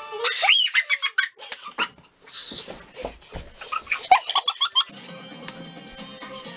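High-pitched shrieks and squeals in short broken bursts with gaps between them, then background music with held tones begins about five seconds in.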